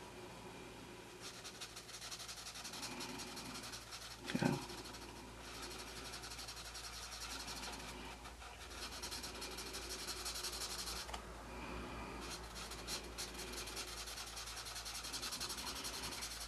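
Winsor & Newton Promarker alcohol marker nib rubbing across coloring-book paper in repeated scratchy strokes, in a few runs of a few seconds with short pauses between, while skin tone is laid in. One brief louder sound about four seconds in.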